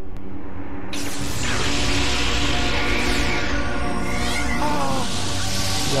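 Ominous background music, joined about a second in by a loud, hissing, shimmering energy sound effect with sweeping pitch glides, for a magic-like zap taking hold of a character. Near the end a warbling, distorted voice begins.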